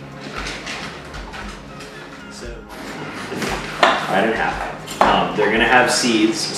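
Indistinct voices, quieter at first and louder in the second half, with sudden loud starts at about four and five seconds in.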